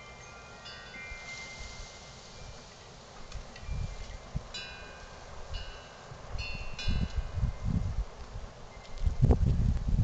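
Wind chimes ringing now and then, a few high notes at a time, with gusts of wind rumbling on the microphone that grow strongest near the end.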